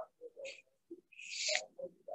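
A faint, broken-up human voice murmuring in short bits, with two hissing 's' sounds, about half a second in and again near the middle, dropping to silence between the bits.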